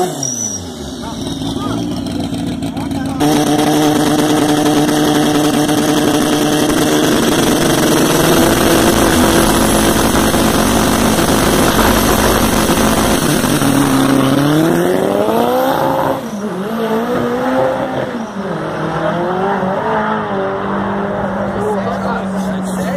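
Modified hatchback drag car's engine held at high revs with tyre noise during a burnout, loud and steady for about ten seconds. It is then revved up in a rising sweep that cuts off sharply, followed by several shorter rises and falls in revs before settling to a steady lower note.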